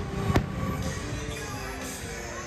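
Aerial firework shells bursting: two sharp bangs, one at the very start and a second about half a second later, with music playing underneath.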